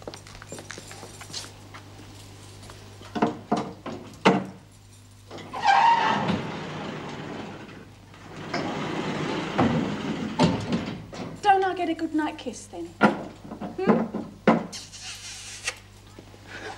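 A woman being shut into a barred prison cell: sharp knocks and clanks from the metal bars and door, two longer stretches of scraping or rushing noise, and her wordless cries in the second half.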